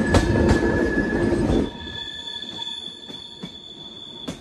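Passenger train running on curving track: rumble with rail-joint clicks and a steady high wheel squeal. About halfway through the sound drops suddenly to a quieter run, with a thin high-pitched squeal and a few clicks.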